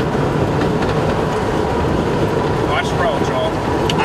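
Strong tornado wind rushing steadily around a moving storm-chase vehicle, a loud even rumble with hiss, as debris blows past.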